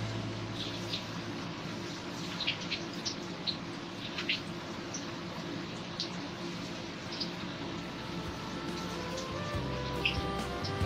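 Manchurian dough balls deep-frying in hot oil in a wok: a steady sizzle with scattered sharp crackles and pops. Background music runs faintly underneath and grows louder near the end.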